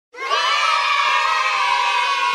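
Channel intro audio opening on a dense, steady wash of many voices like a cheering crowd, coming in abruptly just after the start and holding without a break.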